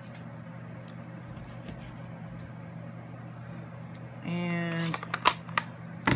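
Steady low hum with a few faint taps. About four seconds in, a brief voice, then a couple of sharp clicks from stamping supplies being handled on the craft table.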